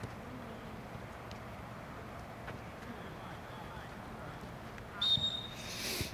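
Referee's whistle: one high blast of about a second near the end, stopping play in a seven-a-side football match.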